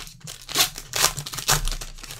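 The foil wrapper of a 2019 Unparalleled Football trading card pack is torn open and crinkled by gloved hands. It makes a continuous run of irregular crackles, loudest about half a second, one second and a second and a half in.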